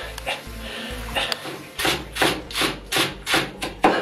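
Kitchen knife chopping finely minced vegetables on a wooden cutting board, a steady run of strokes about two to three a second starting about two seconds in.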